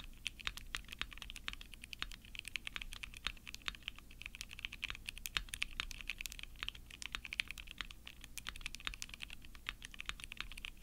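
Typing on a plateless Baldr60 glass-cased mechanical keyboard with SP-Star Cyber switches and GMK Bleached keycaps: a quick, unbroken stream of keystrokes.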